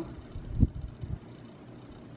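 A dull, low thump about half a second in and a softer one about a second in, over a low steady rumble.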